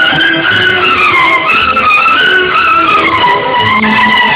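Instrumental interlude of a sad Urdu film song: a violin melody gliding up and down between notes over a sustained accompaniment, with no singing.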